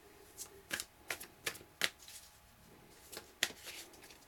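A deck of tarot cards being shuffled by hand: a run of sharp little snaps and flicks as the cards strike one another, with a short pause in the middle before a few more near the end.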